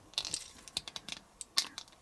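Small plastic parts of a transforming action figure clicking and rattling as they are folded and pressed into place by hand: a scatter of light, irregular clicks.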